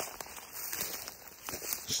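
Footsteps through dry grass and weeds: soft irregular rustling with a few faint crackling steps.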